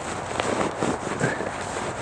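Rustling and crackling of dry shredded honeysuckle bark and jacket and trouser fabric as handfuls of the bark are pushed into a trouser pocket, an uneven scratchy sound.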